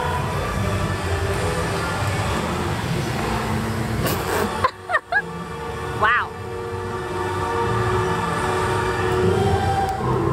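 Music with voices and sustained notes, over a steady low rumble. It drops out briefly a little before the middle, and a short warbling sound follows about six seconds in.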